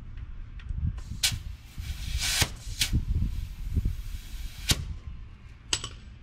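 Hand work on a dirt bike at its rear wheel: several sharp clicks and knocks over a rushing hiss that starts about a second in and cuts off near the end. A double click follows just before the end. The engine is not running.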